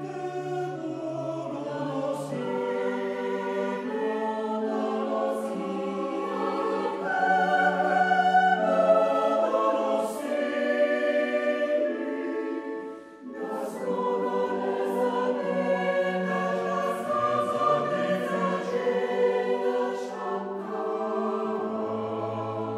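A choir singing a slow sacred piece in long, sustained phrases. It grows louder shortly before the middle and breaks off briefly just past halfway before going on.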